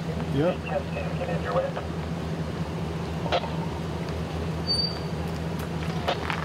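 Steady low drone of an idling engine running throughout, with a short spoken word early on.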